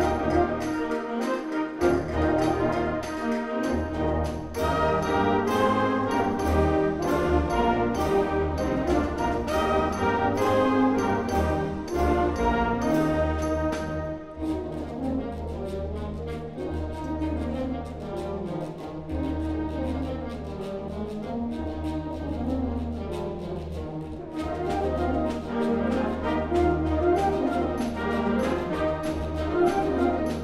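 High school concert band playing a lively reel, with flutes, clarinets and brass over a steady percussion beat. About halfway through, the beat drops out and the music thins and softens, then builds back to full band near the end.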